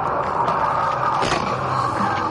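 Steady road and engine noise heard from inside a moving car's cabin on a highway, broken about a second and a half in by the sudden bang of a collision ahead, where a car that has crossed into the opposing lane strikes another vehicle.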